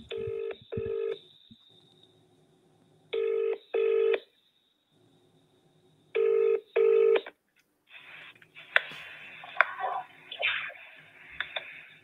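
A UK-style telephone ringback tone heard down the line: three double rings, each a pair of short steady buzzes about every three seconds. About eight seconds in the call is answered, and faint crackle and clicks come over the line, typical of paper being rustled near the receiver.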